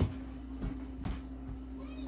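Cuisinart CJE-1000 centrifugal juicer's motor running with a steady hum, with a light knock at the very start.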